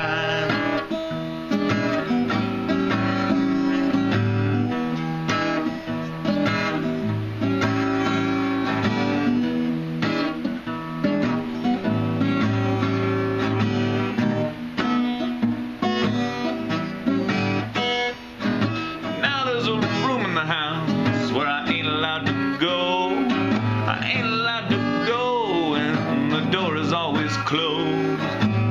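Steel-string acoustic guitar playing steady strummed chords as an instrumental passage between sung verses. A man's voice comes in over it, wavering, about two-thirds of the way through.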